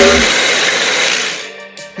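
A loud rushing, hissing sound effect that fades away over about a second and a half.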